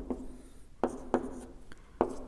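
Marker pen drawing lines on a whiteboard: about four short strokes.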